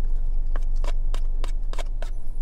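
Wooden chopsticks clicking against a plastic bento tray while picking up food: about five sharp clicks, roughly three a second, in the second half.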